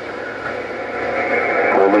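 Steady hiss of radio static from an HR2510 transceiver's speaker, with a man's voice starting a word just at the end.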